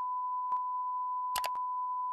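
A steady electronic beep tone held at one unchanging pitch, with a few faint clicks over it.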